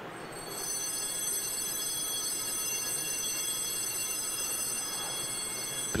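Altar bells rung at the elevation of the host during the consecration at Mass: a high, shimmering ring of several bell tones that starts about half a second in and partly dies away near the end.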